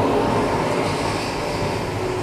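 Dense, steady noise drone with a low hum underneath, from a live electroacoustic improvisation of played-back field recordings and processed radio.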